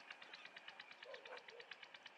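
Faint, rapid high-pitched chirping of insects, an even pulse of about a dozen chirps a second.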